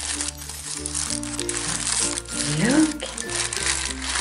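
Crumpled silver wrapping paper crinkling as it is pulled and unfolded from a small gift box, over light background music.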